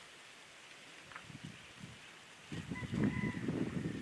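Outdoor rural ambience: a faint steady hiss, then from about two and a half seconds in a louder, uneven rustling rumble, with a brief thin chirp-like tone just before three seconds.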